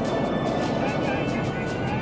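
A large street crowd shouting and cheering together, heard over steady background music.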